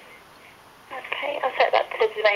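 A voice heard over a telephone line, thin and narrow like a phone call, starting about a second in after a moment of faint hiss.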